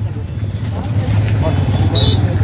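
Motorcycles and cars running in close, slow street traffic, a steady low engine rumble, with a short horn beep right at the end.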